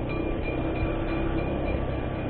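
Motor scooter riding along with a steady engine drone, road and wind noise, and a faint high whine.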